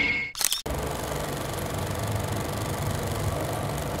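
A short sharp burst about half a second in, then a steady low hum with a faint hiss, unchanging and machine-like.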